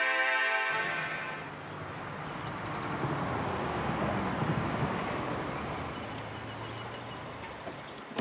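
Music cuts off within the first second, then a small Fiat Panda hatchback's engine runs as the car drives slowly across the car park and comes to a stop, the hum swelling midway and easing near the end. A bird chirps repeatedly, about three times a second, over it.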